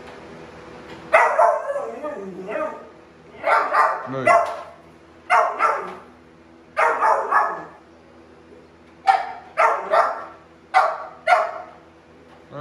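Pit bull barking in clusters of two or three sharp barks, over a dozen in all, echoing in a concrete basement.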